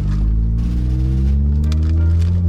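Car engine heard from inside the cabin, its low drone rising steadily in pitch as the car accelerates.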